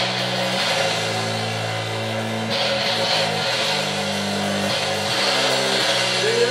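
Live rock band instrumental intro: electric guitar and bass holding low sustained chords that change every second or two, with a high hiss-like wash that comes and goes.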